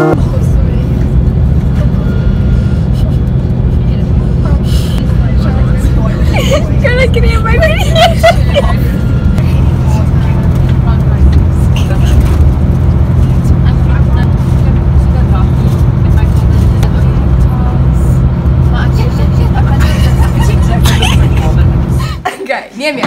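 Steady low rumble of a coach bus's engine and road noise heard from inside the cabin, with people talking over it, most clearly a few seconds in.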